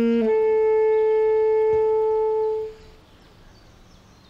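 Score music: a wind instrument holds a long note that leaps up an octave just after the start, then stops about two and a half seconds in, leaving a quiet pause.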